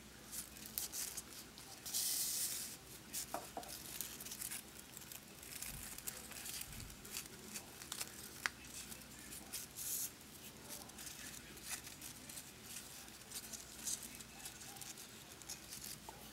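Faint rustling and crinkling of grosgrain ribbon loops being handled while needle and thread are pulled up and back down through the bow's centre, with a brief louder rustle about two seconds in and a small sharp tick later on.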